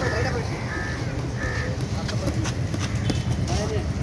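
Gloved punches from child boxers sparring, landing as irregular short slaps and taps, over a constant low rumble and voices.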